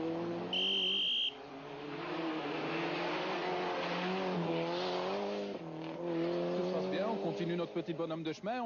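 Rally car engine revving hard on a special stage, its pitch climbing and dropping with throttle and gear changes. A short high-pitched squeal comes about half a second in.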